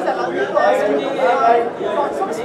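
Chatter: several people talking at once, with no single voice standing out.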